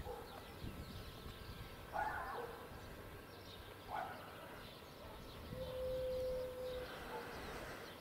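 Quiet outdoor ambience with faint distant animal calls: two brief calls about two and four seconds in, then a steady held tone lasting a little over a second past the middle.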